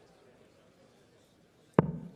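Hushed arena, then a single sharp thud near the end as a steel-tip dart strikes the bristle dartboard.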